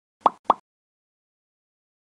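Two quick cartoon-style plop sound effects, about a quarter second apart, from an animated logo intro.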